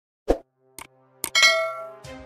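Subscribe-button animation sound effect: three short clicks or taps about half a second apart, then a bright bell ding that rings and fades away.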